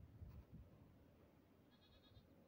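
Near silence in an open field, with one faint, short, quavering animal call in the distance near the end.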